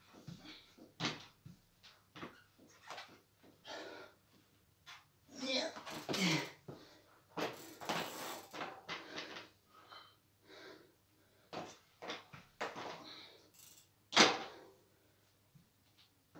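Irregular short knocks, clicks and rustles from a rider balancing on a standing mountain bike and putting a foot down on the floor, mixed with the rider's breathing and short vocal sounds; the loudest burst comes about fourteen seconds in.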